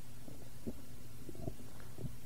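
Steady low electrical hum in the recording's background, with a few faint soft clicks, like small mouth or handling noises near the microphone.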